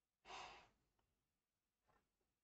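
A person's breath close to the microphone: one short exhale lasting about half a second, followed by a much fainter breath near the end, with near silence between.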